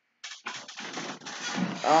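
Rustling and scraping handling noise close to the microphone, made by a person moving right up against the webcam, starting suddenly just after the start; a short hesitant 'um' comes in near the end.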